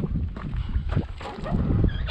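Wind rumbling and buffeting on the microphone, with a few short crunching footsteps on gravel.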